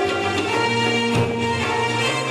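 Live Egyptian oriental dance band music: a melody of held notes over goblet-drum strokes.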